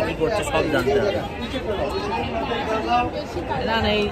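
Several people talking at once: overlapping chatter with no other sound standing out.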